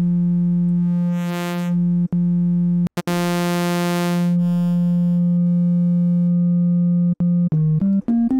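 Xfer Serum software synthesizer holding one low note on a sine-wave wavetable. As the wavetable position is swept toward a sawtooth shape, its tone grows brighter and buzzier, then mellows again. The note is cut and restruck a few times, with short notes near the end.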